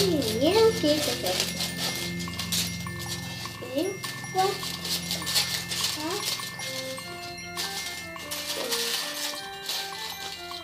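Background music with long held notes and a simple stepping melody, over the crinkling and snipping of scissors cutting aluminium foil.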